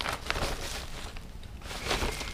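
Damp newspaper rustling and crinkling as it is peeled back off a worm bin, with a louder crinkle near the end as the sheet is lifted.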